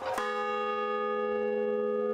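A large hanging bell is struck once just after the start, then rings on steadily with several tones sounding together.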